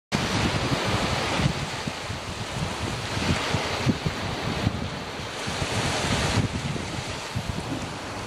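Surf washing onto a sandy, shelly beach, a steady rushing hiss that swells and eases with the waves, with wind buffeting the microphone in low, uneven gusts.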